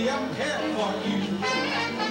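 Live band music with brass, and a male singer singing into a microphone over it.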